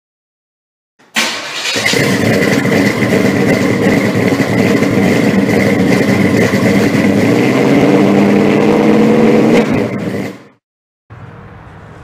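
A car engine starting suddenly about a second in and running loud, rising in pitch as it revs in its last few seconds, then cutting off abruptly. A faint steady outdoor background follows near the end.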